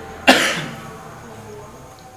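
A person coughing once, sharply, about a quarter second in.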